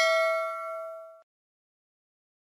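Notification-bell sound effect: a single bright ding of several ringing tones that fades out about a second in.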